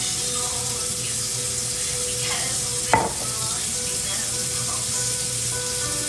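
A steady hiss, with one sharp click about three seconds in.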